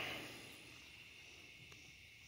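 Nearly quiet outdoor background: a faint steady high-pitched hiss, with a single faint tick near the end.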